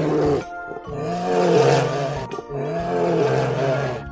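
Bear roaring: a short roar at the start, then two long roars of over a second each, over background music.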